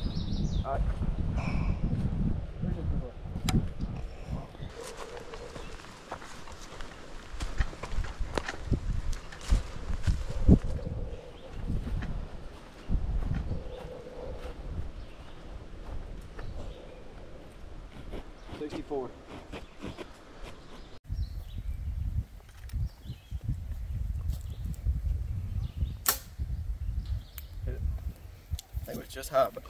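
Compound bow shots at foam 3D targets: sharp snaps of the string releasing and arrows striking, with rumbling wind and handling noise on the microphone between them.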